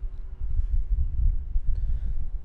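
Low, irregular rumble of handling noise as the speaker moves and reaches across the desk near the microphone, with a faint click near the end.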